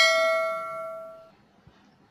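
Notification-bell ding sound effect from a subscribe-button animation: a single bright chime that rings on and fades out a little over a second in.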